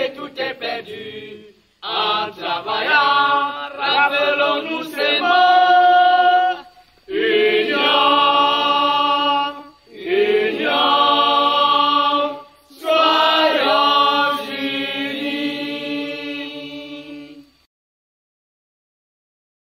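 A group of voices chanting or singing unaccompanied in long phrases with held notes, broken by short pauses, trailing off near the end.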